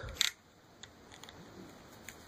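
Small clicks and light handling of a plastic action figure's ball-jointed foot as it is moved: one sharp tick just after the start, then a few faint scattered clicks.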